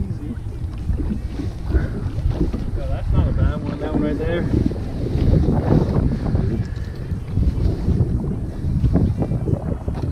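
Strong wind buffeting the camera microphone on an open boat: a loud, gusty low rumble that rises and falls, with muffled voices in the middle.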